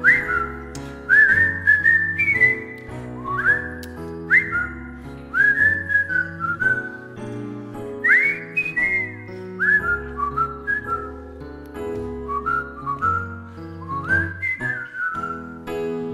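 A whistled tune, its notes scooping up into pitch, over a piano accompaniment.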